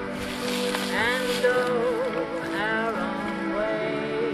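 A woman singing a slow song with vibrato over instrumental backing music played from a portable stereo.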